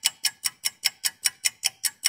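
Clock-ticking sound effect: fast, even, sharp ticks at about five a second, marking a jump forward in time.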